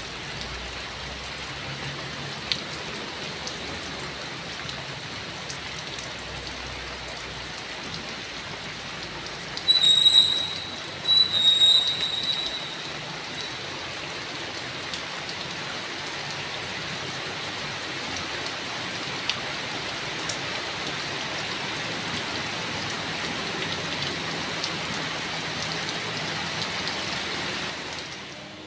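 Steady rain falling on a wet road, with a heavy truck's low engine rumble that fades out about nine seconds in. About ten seconds in come two short, loud, high-pitched squeals about a second apart.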